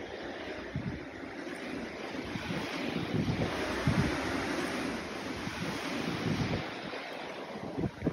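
Strong windstorm gusts blowing through trees, with wind buffeting the microphone in uneven low rumbles; it swells slightly in the middle.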